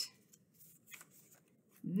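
Faint rustling and light taps of construction paper being picked up and handled on a tabletop.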